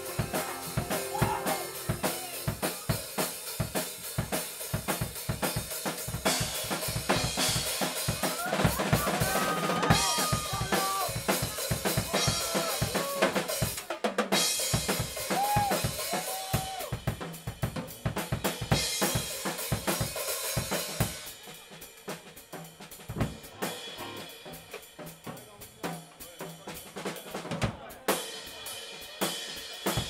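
Live indie pop band playing, with the drum kit to the fore: steady snare and bass drum hits with hi-hat, and melodic lines above them in the middle part. The music gets quieter about two-thirds of the way through, near the close of the song.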